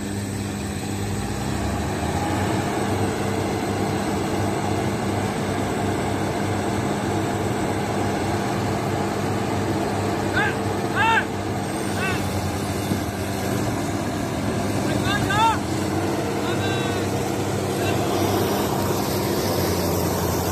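Diesel engines of two Preet combine harvesters running steadily while one tows the other, stuck in a ditch, out on a strap. A few short shouts come about halfway through and again a few seconds later.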